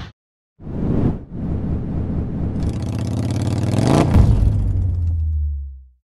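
Engine revving sound effect in an outro logo sting: it swells after a short silence, peaks with a whoosh about four seconds in, then fades out.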